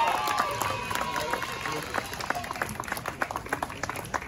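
Small audience applauding: scattered hand claps with a few voices over them in the first second or so, the clapping gradually fading.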